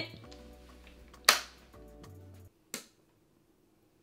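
Metal latches of a wooden chest being unfastened: one loud sharp click about a second in, then a smaller click over a second later, over faint background music that drops out after the second click.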